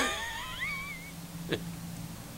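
A man's laugh trailing off into a high, wheezy rising squeal, followed by a faint steady low hum and a single click about a second and a half in.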